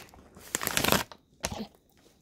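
A dog's paws shifting on a bed comforter: a stretch of bedding rustling starts about half a second in and lasts about half a second, followed by a shorter rustle near the end.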